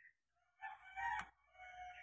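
A rooster crowing, faint, starting about half a second in: one crow in two parts, the second part a held note. A single short click comes about a second in.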